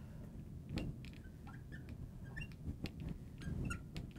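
Marker tip on a glass lightboard while an equation is written: faint, short squeaks and small clicks, scattered irregularly.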